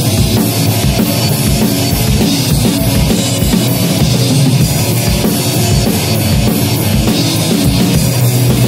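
Rock drum kit played hard: repeated kick-drum beats, snare hits and crash and ride cymbal wash, over sustained low instrument notes in a heavy rock groove.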